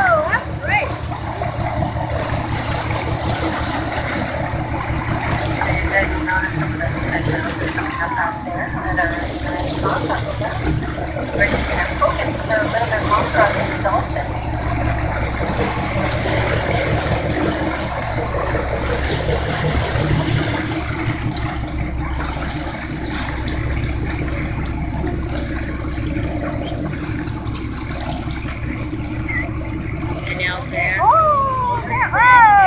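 A boat's engine runs steadily with a low, evenly pulsing rumble as the boat moves through choppy sea, with water splashing along the hull. Passengers talk in the background.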